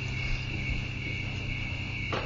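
A steady high-pitched drone, insect-like, over a steady low hum.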